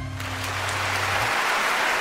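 Large concert audience applauding at the end of a mariachi song, growing louder. The last low note of the band fades out just over a second in.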